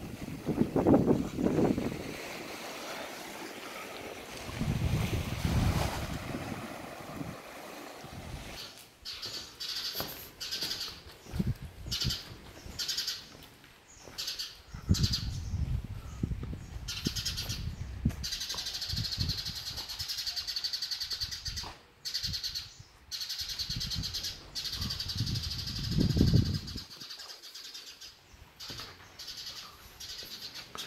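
Birds chirping steadily from about ten seconds in, with gusts of wind buffeting the microphone at the start and a few times later on.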